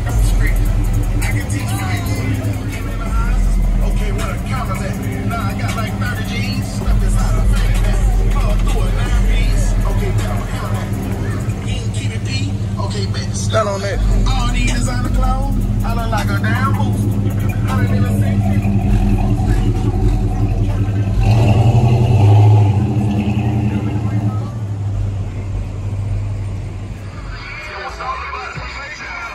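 Cars running at a night car meet, with bass-heavy music and indistinct voices mixed in; one engine swells louder about three-quarters of the way through.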